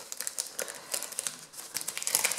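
Clear plastic packaging sleeve crinkling as it is handled between the fingers, a string of small irregular crackles.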